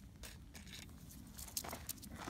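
Faint scrapes and clicks of metal snake tongs and shoes on gravelly desert ground, with a few louder scuffs near the end.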